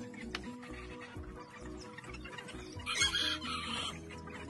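Chickens clucking over background music, with a loud burst of chicken calling about three seconds in that lasts about a second.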